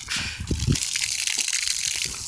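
Garden hose running full, its stream of water gushing and splashing onto plants and against a house wall, with a couple of low thuds about half a second in.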